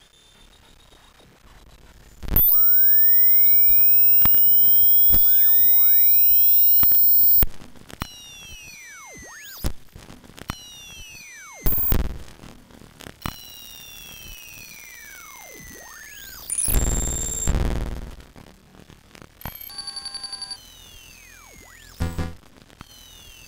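Ciat-Lonbarde Cocoquantus 2 electronic instrument, patched with banana cables, playing dry with no effects added: chirping tones that sweep up and down in pitch, a loud steady high tone from about two seconds in to about seven seconds, scattered sharp clicks, and a loud low buzzing burst a little before the end.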